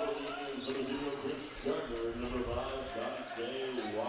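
Gym sound during a stoppage in a basketball game: people talking in the hall, with a basketball bouncing on the hardwood floor.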